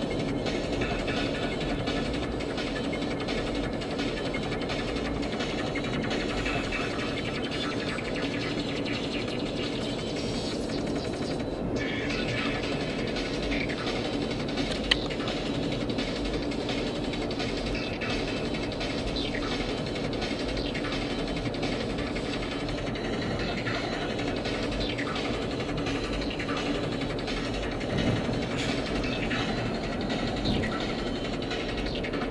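Steady road and engine noise inside a car's cabin while it drives along a freeway, even and unbroken, with one small click about halfway through.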